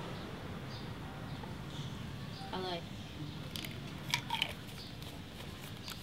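Steady low background hiss of an outdoor set, with a brief faint voice about two and a half seconds in and a few small sharp clicks about a second later.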